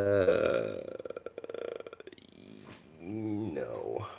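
A man's wordless voice: a drawn-out low hum that breaks into a rattly, creaky rasp, then a second short hum about three seconds in.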